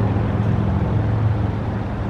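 A running vehicle engine idling nearby: a steady low hum that holds level.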